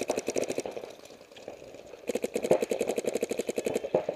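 Paintball marker firing a rapid stream of shots, well over ten a second, thinning and quieter about a second in, then firing densely again from about two seconds in until just before the end.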